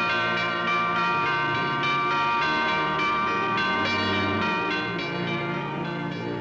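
Bells pealing, many overlapping strikes with long ringing tones, over the cartoon's orchestral score.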